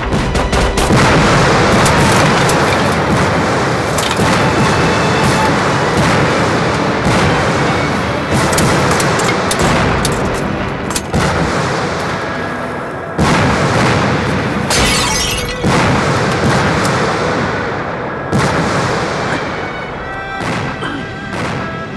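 Mortar shells exploding in a barrage: several sudden booms, near the start and again about two-thirds of the way through, each dying away slowly, over a dramatic music score.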